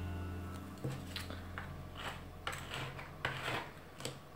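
A clear jelly nail-stamping stamper pressed and rocked on a metal stamping plate, giving a run of short soft scuffs and clicks, over a steady low hum.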